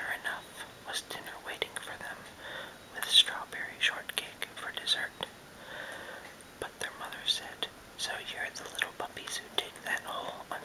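A man whispering steadily as he reads a bedtime story aloud, with small clicks between words.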